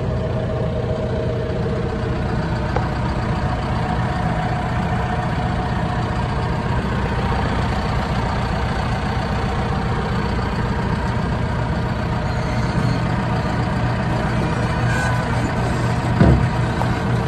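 John Deere 310SJ backhoe loader's four-cylinder diesel engine idling steadily just after starting, heard from the open operator's station.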